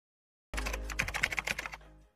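Keyboard typing sound effect: a quick run of sharp clicks that starts abruptly about half a second in and fades out just before the end.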